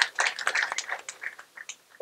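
Scattered audience clapping, a run of irregular sharp claps that thins out and dies away over about a second and a half.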